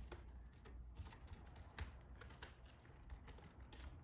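Faint, scattered small clicks and crackles of hands working wire and a wicker fishing creel against a dried artemisia wreath, over a low steady hum.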